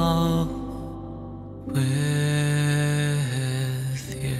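A man's voice singing slow, long-held notes of the song's closing line over soft grand piano. The voice fades about half a second in, swells back on one long sustained note through the middle, and steps down to a lower note near the end.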